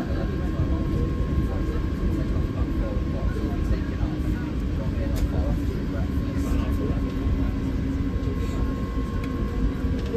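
Steady low rumble and hum inside the cabin of an Airbus A350-1000 as it taxis toward the runway, its Rolls-Royce Trent XWB engines at low thrust.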